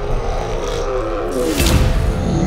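Logo-sting music for an animated intro: a deep rumble under held synth tones, with a tone sliding downward through the middle and a whoosh that swells to a peak shortly before the end.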